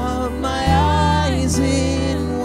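Live worship band playing a slow song on acoustic and electric guitars, bass, drums and keyboard, with a melody line that bends and changes pitch partway through.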